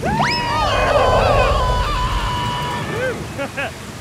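Two cartoon voices screaming in fright: a rising yell that is held for about two and a half seconds over a rushing, rumbling noise, then breaks into short bursts of laughter near the end.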